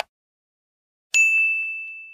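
A single bell-like ding struck once about a second in, ringing on one high pitch and slowly fading.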